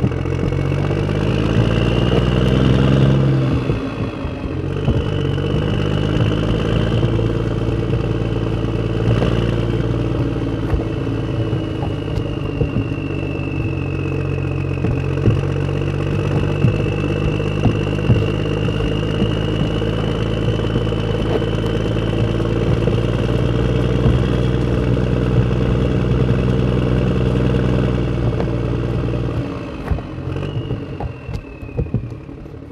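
Small motor and gearbox of a homemade model tractor running steadily under load as it pulls a seeder through sand, with a high whine and some clatter. The pitch climbs over the first few seconds, then dips about four seconds in.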